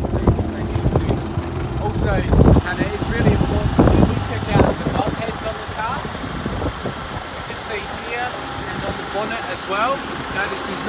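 Mitsubishi Pajero engine idling steadily with the bonnet open.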